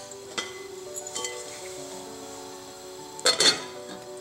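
Soft background music with sustained notes; a little over three seconds in, a glass pot lid is set down onto a stainless steel pan with a couple of sharp clinks.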